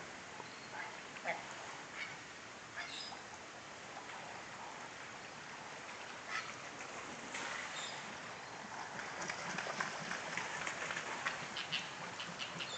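Faint, short waterbird calls from a large flock on the water, scattered at first and more frequent over the last few seconds, over a steady outdoor hiss.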